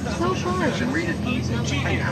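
People talking inside a moving bus, over the steady low drone of its engine and road noise.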